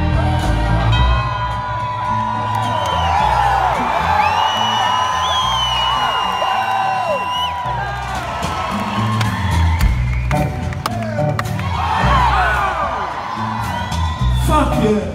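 Live rock band playing an instrumental passage, with the crowd whooping and cheering over it. The bass and drums drop out for several seconds in the middle, leaving a held high tone that glides upward partway through, then the full band comes back in.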